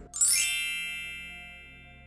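A bright chime sound effect: a quick rising shimmer of ringing tones that peaks almost at once and then rings out, fading over about a second and a half.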